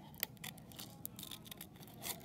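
Scissors cutting paper: a run of quiet snips, with a sharper click about a quarter of a second in.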